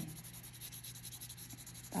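Faint scratching of a colored pencil shading on paper, the lead rubbing in quick back-and-forth strokes.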